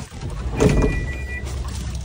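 A vehicle engine idling steadily, heard from inside the cabin. About half a second in there is a loud clunk and rustle as a passenger gets up, and a short high electronic beep.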